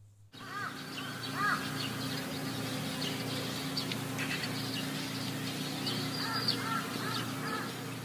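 Birds calling: short chirps that rise and fall, in small groups, over a steady low hum.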